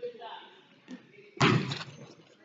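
A single loud slam or thud about one and a half seconds in, echoing briefly around a large gym hall, over faint voices.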